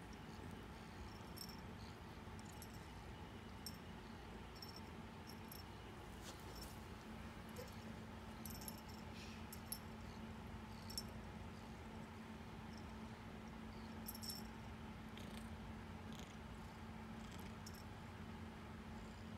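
Kitten purring softly while kneading a chunky knit blanket, with scattered faint clicks and scratches of her claws catching in the yarn.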